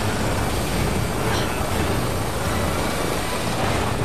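Dense film fight-scene sound mix: a loud, steady rumbling noise bed with no clear speech or single sudden event standing out.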